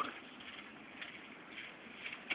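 Faint steady background noise, with a few soft ticks about a second in and again shortly after.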